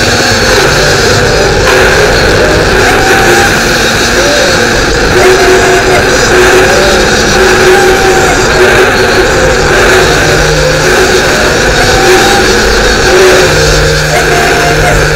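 Loud, heavily distorted music: a dense wall of noise with a short wavering melodic figure recurring every couple of seconds and a low bass note underneath.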